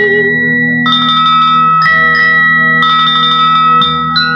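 Instrumental interlude of an old Hindi film lullaby: a sung note fades at the very start, then bell-like struck notes ring out about once a second over a sustained low accompaniment.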